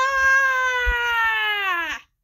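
A high-pitched voice holding one long wailing cry, steady at first, then sliding slowly down in pitch near the end before it cuts off.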